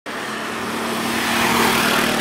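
Road traffic: a motor vehicle passing close by, its engine a steady hum under the tyre and road noise, which grows slightly louder toward the end.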